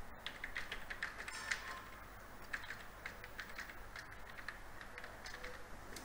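Computer keyboard typing: an irregular run of key clicks, quickest in the first couple of seconds.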